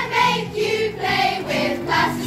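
A children's choir singing a song together in unison, the voices holding notes and moving from phrase to phrase.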